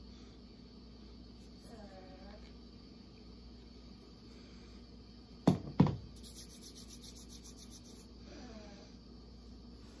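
Two sharp clicks about five and a half seconds in, followed by hands rubbing lotion together in quick, even strokes for about two seconds. A faint hum of a voice comes twice in the otherwise quiet room.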